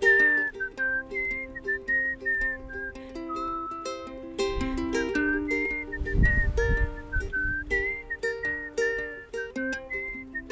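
A melody whistled over a plucked ukulele, the pure whistle line moving high above the picked notes. A low rumble of wind on the microphone swells under the music in the middle of the stretch.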